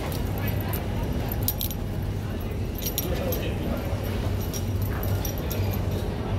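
Small metal jingling and clicks as a shoulder bag is picked up and its strap fittings are handled, a few short clinks in the first half. Under it runs the steady low hum of an airport terminal, with background voices.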